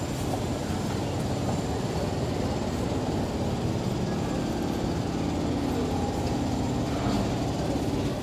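Steady low rumble of vehicles in a city street soundscape, with a faint thin high tone running under it.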